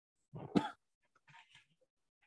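A person's single short cough about half a second in, followed by a few faint breathy sounds.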